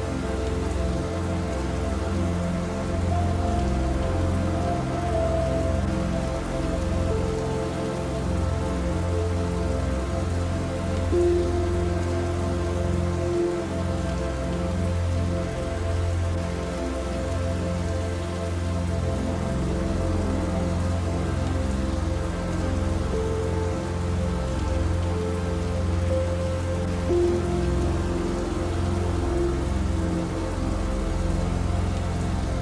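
Steady rain falling, mixed with slow, soft relaxation music of long held notes.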